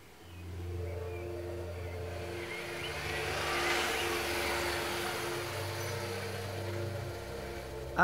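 Volkswagen Polo's engine and tyres as the car drives slowly in and pulls up. The sound swells about four seconds in as the car draws close.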